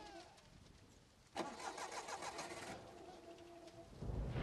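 A car's starter motor cranking the engine: a whine with a rapid, even pulse that begins suddenly a little over a second in and stops just before the end, without the engine running.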